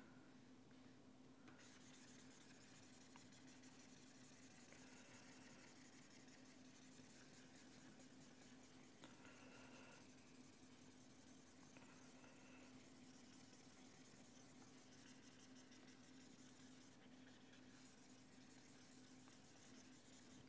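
Very faint scratching of a stylus rubbing across a pen tablet as on-screen writing is erased, over a steady low electrical hum; near silence overall.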